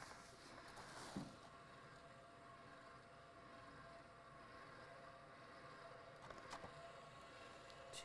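Faint steady hum of an electric stand mixer running on a low speed, barely above room tone, with a soft brief rustle about a second in.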